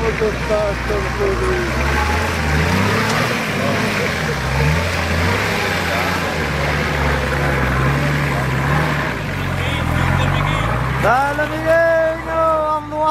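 Engine of a lifted Nissan Patrol 4x4 working under load as it crawls over a steep rutted dirt step, its revs rising and falling several times and dropping near the end. Spectators' voices are heard, with a loud call near the end.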